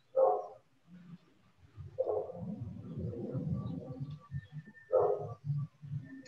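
A dog barking: three short barks spread over a few seconds, with a low murmur between the second and third, picked up through a participant's open microphone on a video call.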